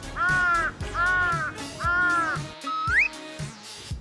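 Three crow caws of about half a second each over background music with a steady beat, followed by a short rising whistle about three seconds in.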